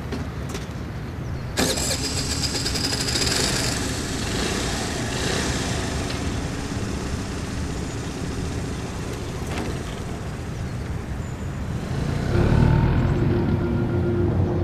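Small motor scooter engine running, with a sudden louder burst about a second and a half in and another rise near the end.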